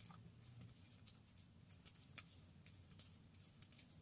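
Near silence: a few faint, short clicks of metal circular knitting needles as knit stitches are worked, over a faint low room hum.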